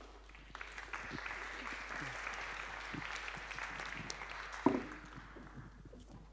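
Audience applauding for about five seconds, fading out near the end, with one sharp thump a little before two-thirds of the way through.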